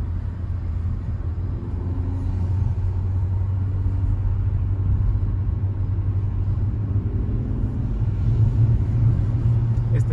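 Cabin noise of a Hyundai Accent 1.5L driving in city traffic: a steady low rumble of engine and road, a little louder near the end.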